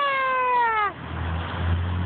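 A person's long, high-pitched exclamation held on one slowly falling note, ending about a second in. A steady low rumble follows.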